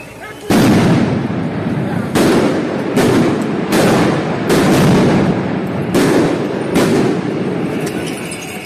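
A rapid series of about seven loud explosive bangs in a city street, the first about half a second in and the rest coming roughly one a second, each echoing briefly between the buildings.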